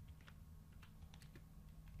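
Faint computer keyboard typing: several separate key presses as a word is typed, over a low steady hum.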